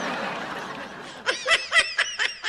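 A person laughing: a breathy exhale, then a run of quick, high-pitched laughs starting a little over a second in.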